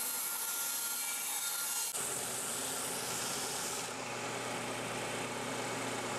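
Bandsaw running and cutting through a maple block. About two seconds in, the sound changes abruptly to a different steady machine noise, a belt sander running, with a low hum joining about four seconds in.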